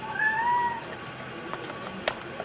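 A kitten meows once: a single short call, under a second long, that rises slightly in pitch.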